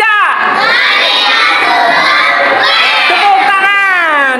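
A group of children shouting together, many high voices overlapping in one long, drawn-out cry.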